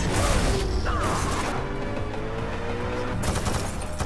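Action-movie car-chase sound mix: a music score under loud bursts of gunfire and crashing metal, at the start, about a second in and again near the end, with a slowly rising tone in between.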